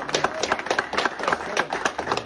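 A small group of people applauding, a fast irregular patter of hand claps.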